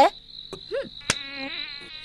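Night insects keep up one steady high-pitched tone throughout. A brief voiced sound rises and falls just under a second in, followed by a sharp click.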